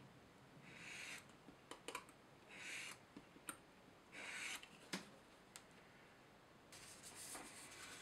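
Olfa hook-blade plastic cutter scribing planking grooves into plastic card along a steel rule: three faint, short scraping strokes about a second and a half apart, with a few light clicks in between.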